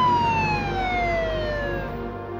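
Police car siren in a slow wail, its pitch falling steadily and cutting off near the end.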